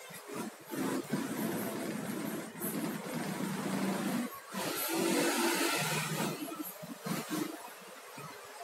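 Razor blade scraping as it is pushed along between the layers of a used LCD polarizer film, in two long strokes with a short break between them; the second stroke is louder.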